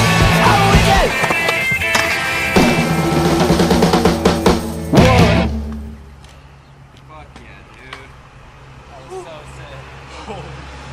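Loud music with vocals that cuts off suddenly about five and a half seconds in. After it comes quiet outdoor street sound: a low steady hum, a few faint clicks and faint voices.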